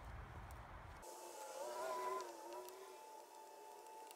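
A faint, distant engine drone with a slightly wavering pitch, over a low background rumble that drops away about a second in.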